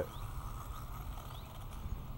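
Quiet outdoor background: a steady low rumble with a few faint, short rising bird chirps.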